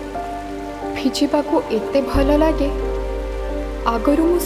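A song: a singer's voice carrying the melody over held, sustained music, with steady rain hissing underneath.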